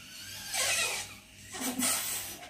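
Air blown by mouth into the valve of an inflatable plastic water play mat to inflate it: two breathy rushes of air, one about half a second in and a shorter one near the end.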